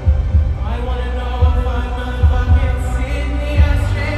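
Concert music over a stadium sound system: deep heartbeat-like bass thumps, often in pairs, about once a second, with sustained synth tones that slide in about a second in and hold.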